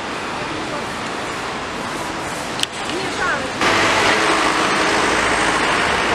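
Busy city street traffic noise, a steady rush without distinct engines. A brief click comes a little over halfway through, and just after it the rush jumps abruptly louder and stays so.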